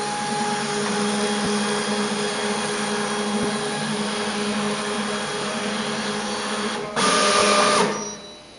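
TSC TTP-2610MT industrial thermal transfer label printer feeding label stock through its media sensor during calibration: a steady motor whir with a hum. It grows louder and brighter for about the last second, then stops near the end.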